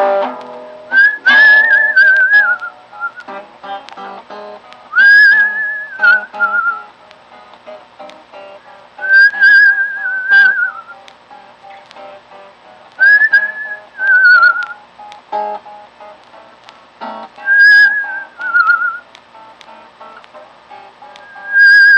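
Whistled blues melody over picked acoustic guitar in an instrumental break of the song: five phrases about four seconds apart, each a held high note that wavers and slides down at its end, with the guitar notes continuing underneath.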